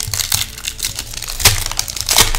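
Foil wrapper of a trading-card booster pack crinkling and crackling as it is torn open, with one sharper crack about one and a half seconds in.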